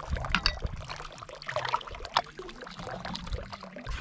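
Water running from a hose into a trough, with irregular splashes and small knocks as things are handled in the water.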